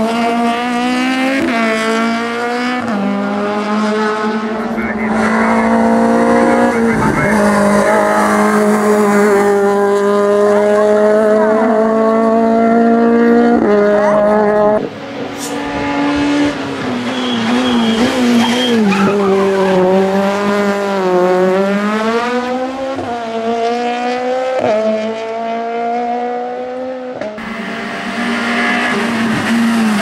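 Citroën Saxo race car's engine revving hard uphill. Its pitch climbs and drops back sharply again and again as it changes gear and brakes for the bends.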